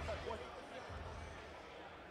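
Faint, indistinct voices in an arena, over a low rumble that dies away within the first half second and comes back briefly about a second in.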